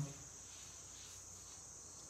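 Faint, steady high-pitched chirring of crickets.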